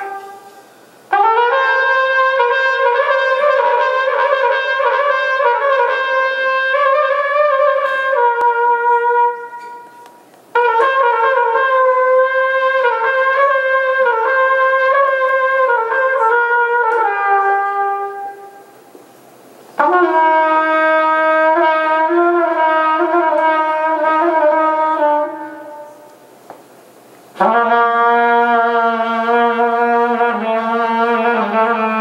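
Solo trumpet playing four long phrases of sustained held notes, each stepping slowly between a few pitches. Short gaps fall between the phrases, and no other instrument is heard.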